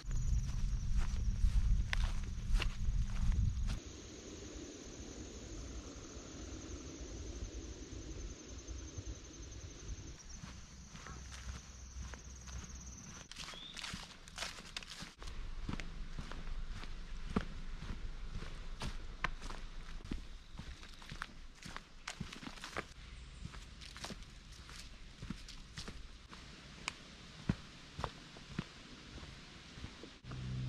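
A hiker's footsteps on grass and dirt trail, a run of short steps throughout. A loud low rumble fills the first few seconds, and a steady high whine runs through the first half.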